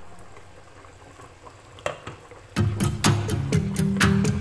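A pot of beef nihari stew simmering with faint bubbling, and a single click just before two seconds in. After that, background music with a steady beat comes in and covers it.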